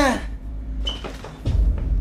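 A man's voice ends a short apology, followed by a few soft knocks and a low rumble.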